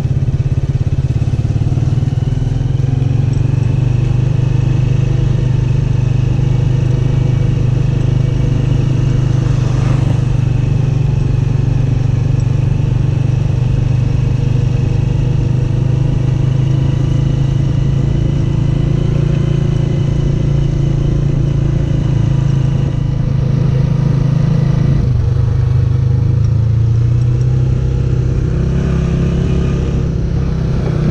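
Honda 125 motorcycle's single-cylinder four-stroke engine running steadily under way, heard from the rider's seat. Near the end the engine note dips briefly and then settles at a different pitch.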